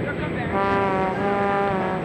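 A long, steady horn-like note, a single pitch with many overtones, starts about half a second in and holds over background music.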